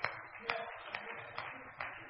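Faint, steady handclapping from a congregation, about two claps a second.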